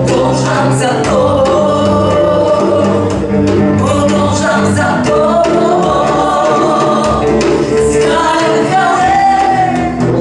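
Worship music: voices singing long, slowly bending notes over steady sustained chords.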